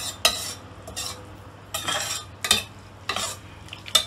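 Metal spoon stirring a saucy stir-fry of peppers and onions in a stainless steel pot, scraping against the pot in a series of short strokes, with a pause about a second in. A faint sizzle of frying runs underneath.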